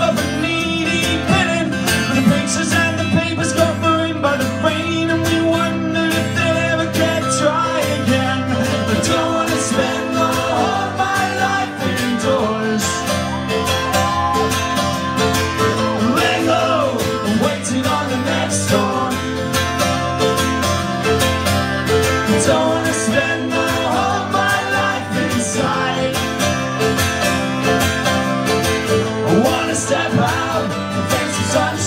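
Live acoustic band music: a strummed acoustic guitar and a mandolin playing together, with a man singing lead and a second voice joining in.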